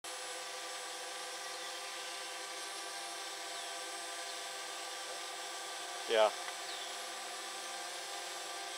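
Steady multi-tone hum of a hovering quadcopter drone's motors and propellers, with a few faint, short high chirps over it.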